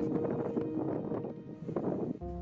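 Wind buffeting an outdoor microphone, with soft background music holding a steady note that fades away about a second in.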